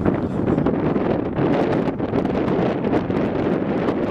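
Wind buffeting the camera microphone: a loud, steady rushing rumble that lasts throughout.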